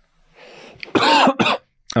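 A man gives one short, throat-clearing cough close to the microphone about a second in, after a soft breath.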